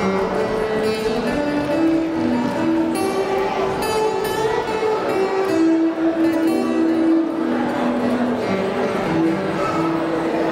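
Acoustic guitar playing a slow song melody as an instrumental, picked single notes each held up to about a second.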